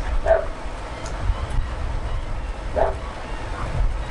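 A dog barking twice, single short barks about two and a half seconds apart, over a low steady rumble.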